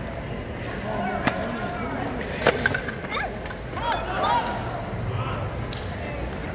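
Fencing bout: a few sharp metallic clashes of blades and foot strikes on the metal strip, the loudest cluster about two and a half seconds in, with raised voices echoing in a large hall.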